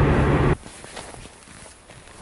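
Steady drone of a car's interior while driving on a snowy road, cut off abruptly about half a second in. Then quieter, irregular footsteps in snow.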